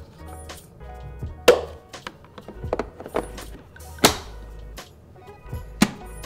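A few sharp plastic clicks and knocks as the dustbin lid and filter of a Roborock S7 robot vacuum are snapped shut and the dustbin is fitted back into place. The loudest clicks come about a second and a half in, at about four seconds and near the end, over steady background music.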